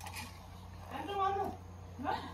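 A domestic cat meowing once, a single drawn-out call about a second in.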